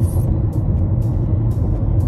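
Steady low road and engine rumble heard from inside a car's cabin at highway speed, with background music.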